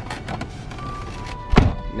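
A van door slammed shut with one heavy thunk about a second and a half in.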